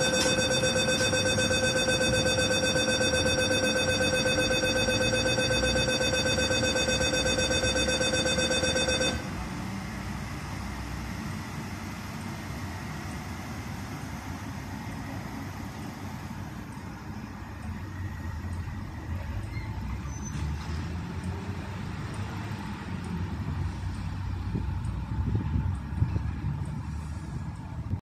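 A steady electronic warning tone sounds for about the first nine seconds, then cuts off suddenly. Under it is the low rumble of an East Rail electric multiple-unit train pulling out of the platform. After the tone stops the rumble carries on, and it grows louder again near the end.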